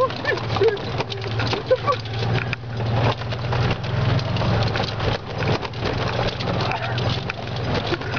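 Golf cart driving fast over bumpy forest ground: a steady motor hum under constant clattering and knocking of the body as the cart, which has no suspension, jolts over the rough track.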